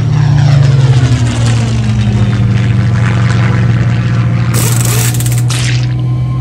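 A propeller plane flying past low, its pitch falling as it goes by, over a motorcycle engine running steadily at road speed. A short burst of hiss comes about two thirds of the way in.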